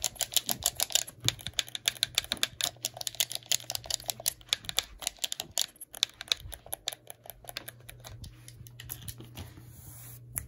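Fast tapping and clicking on a blue PlayStation-style game controller's buttons and plastic shell: rapid sharp clicks, several a second, thinning out over the last few seconds.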